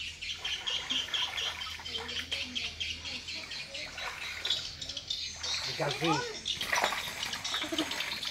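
Muddy pond water sloshing and splashing as a person wades and gropes by hand for fish stranded in the drying pond, with birds chirping throughout.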